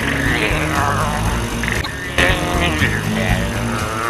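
Dramatic cartoon background music mixed with a vehicle engine sound effect whose pitch glides up and down.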